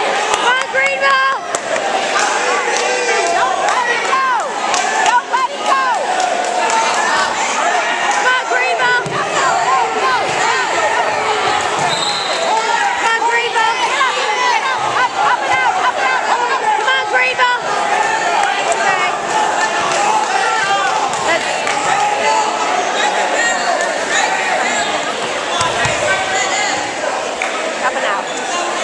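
Many overlapping voices of spectators and coaches calling out during a wrestling bout, with scattered thumps.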